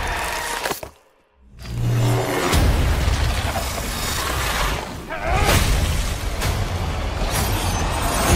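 Movie-trailer mix of score and action sound effects. About a second in the sound cuts out briefly, then a heavy low boom hits, followed by a dense run of music and impact effects.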